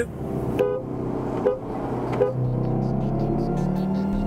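Turbocharged BMW F80 M3 engine accelerating hard at full throttle, its pitch climbing steadily through a long pull. There are three brief sharp sounds in the first two and a half seconds.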